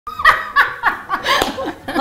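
A woman laughing heartily in a quick run of short 'ha' bursts, about three a second, each dropping in pitch.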